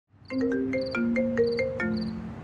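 Mobile phone ringtone: a short tune of quick electronic notes, starting a moment in.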